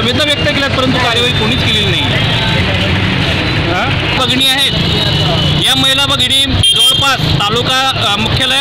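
A man speaking at close range, with a steady low rumble of traffic underneath.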